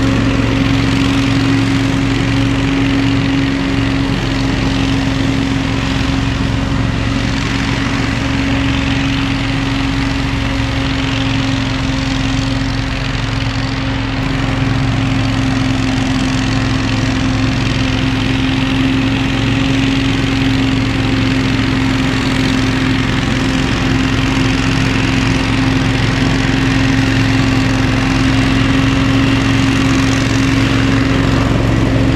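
Billy Goat Z-3000 zero-turn ride-on leaf blower running steadily, a continuous engine drone with a steady fan whine over it. It fades a little in the middle as the machine drives away and grows louder again near the end as it comes back.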